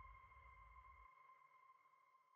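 Near silence, with only a faint steady high tone.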